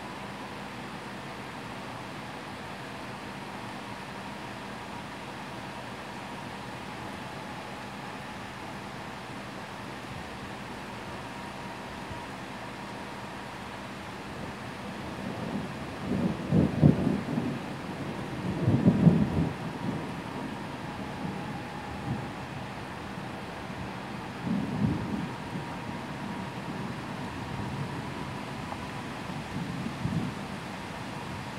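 Thunder rumbling over a steady hiss of heavy rain. About halfway through, two loud rolls come close together, then a weaker rumble several seconds later and another near the end.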